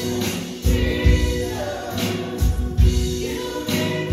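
Live worship song: women's voices singing with acoustic guitar, over a low beat that thuds in pairs.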